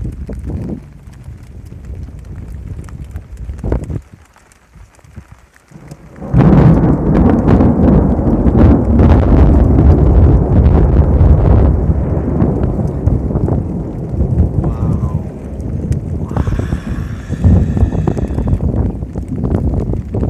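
Wind and rain buffeting the microphone in a rainstorm. A rough, loud rush sets in suddenly about six seconds in and holds for some ten seconds before easing.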